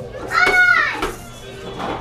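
A toddler's high-pitched vocal squeal: one loud call that rises and falls, lasting about half a second, starting a little way in.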